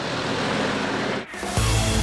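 A MAN lorry driving past, its engine and tyres heard as a steady rushing noise under background music. About one and a half seconds in, a sudden loud musical hit with a deep low end takes over.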